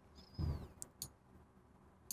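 Quiet room with a brief soft low sound about half a second in, then two faint computer mouse clicks in quick succession about a second in.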